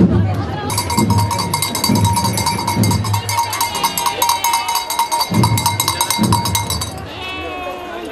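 A metal bell shaken rapidly, ringing in quick repeated strokes for about six seconds and stopping about seven seconds in, over voices from the street.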